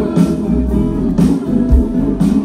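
Live band playing an instrumental passage: five-string electric bass holding low notes under guitar, with a steady drum beat of about two hits a second.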